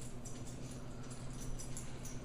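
A damp paper towel rubbing and dabbing on a ball python egg's leathery shell, a few faint scratchy strokes over a steady low hum.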